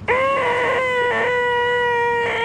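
A man's loud, shrill, nasal "eeeeh" shriek held on one pitch: the "most annoying sound in the world". It starts suddenly and stays steady.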